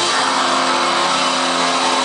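Live metalcore band playing loud, with distorted electric guitars holding one chord steadily over a dense high wash of noise.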